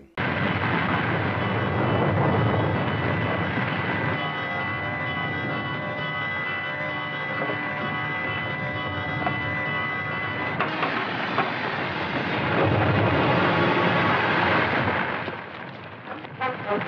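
Mine tunnel caving in: a loud, continuous rumble of falling rock that swells again shortly before the end and then dies away.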